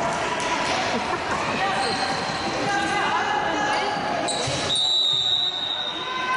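Several voices of players and spectators talking and calling out over one another in an echoing gym hall. Near the end a steady high tone sounds for about a second.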